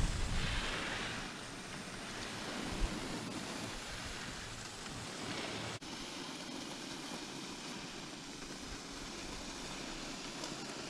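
Steady wind rushing over the microphone during a chairlift ride, loudest in the first second. The sound cuts out for an instant a little past halfway.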